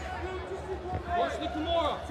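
Speech: a man's commentary voice over a low steady hum.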